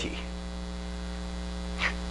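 Steady electrical mains hum: a low drone made of several fixed tones, with a brief faint hiss near the end.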